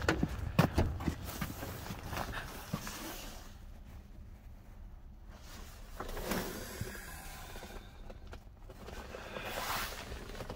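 Handling and movement noise inside a small car's cabin: a few light clicks and knocks in the first second, then soft rustling swishes as someone moves around the seats.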